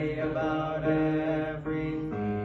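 Congregation singing a slow hymn, holding each note for about half a second.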